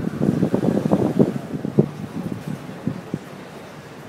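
Wind buffeting the microphone: irregular low rumbling gusts, heaviest over the first two seconds, then easing to a steadier, lower rush.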